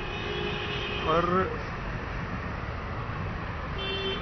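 Steady low rumble of background traffic, with a faint drawn-out tone in the first second or so.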